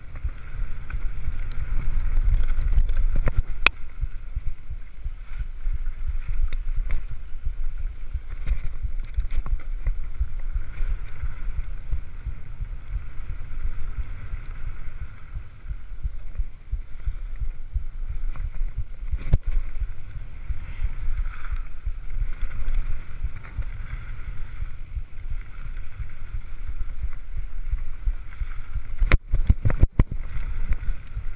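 A mountain bike rolling fast down a dirt singletrack: steady wind rumble on the camera microphone over tyre noise, with scattered sharp clicks and rattles from the bike.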